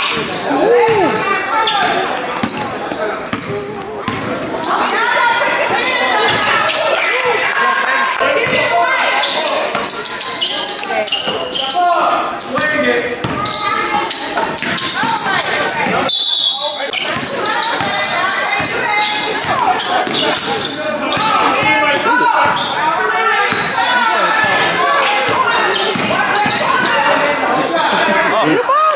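Basketball dribbled and bouncing on a hardwood gym floor among many indistinct shouting and chattering voices, echoing in a large hall.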